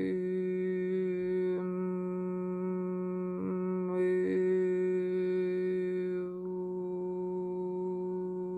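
A woman's voice humming one long, steady note at a single low pitch, its tone growing brighter about four seconds in and thinning a little after six seconds, as vocal toning in a light language healing.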